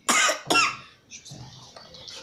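Two short, loud bursts of a person's voice in the first second, cough-like, then only faint low background sound.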